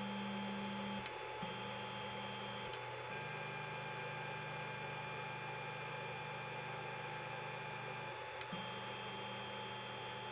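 Creality Ender 5 Plus 3D printer auto-homing on its stock mainboard. Its stepper motors whine with steady tones that change pitch several times as the axes move in turn, with a few short clicks between moves. The whine is super loud because the stock board lacks silent stepper drivers.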